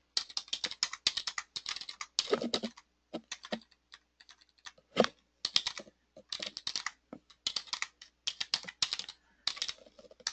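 Typing on a computer keyboard: quick runs of key clicks, thinning to a few scattered taps for a couple of seconds in the middle before picking up again.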